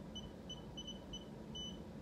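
iCare rebound tonometer beeping: a run of short, faint, high beeps, several a second, each marking the probe tapping the eye for one measurement, with a slightly longer beep near the end.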